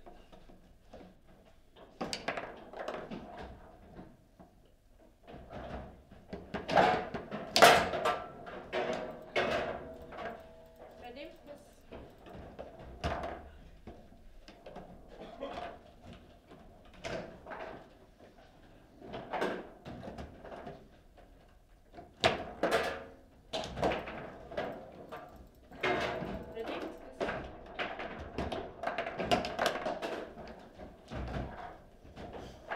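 Table football being played: the ball and the players' figures on their steel rods knock and clack sharply and irregularly against each other and the table, with the loudest run of hits about seven to eight seconds in. The knocks include shots going into the goal.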